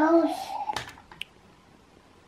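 A short voiced sound, then a few sharp plastic clicks and one brief high electronic beep about a second in. The beep was enough to startle the toddler.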